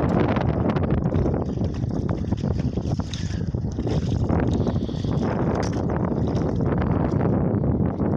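Gusty wind buffeting the microphone, a dense, steady low rumble, with scattered clicks and rustles from handling.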